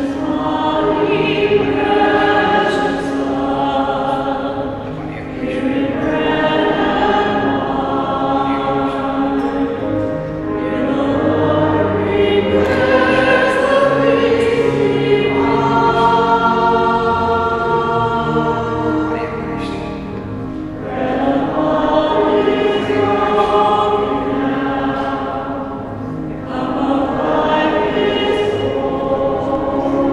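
A church choir singing a hymn in long phrases, with a short breath between lines every five or six seconds.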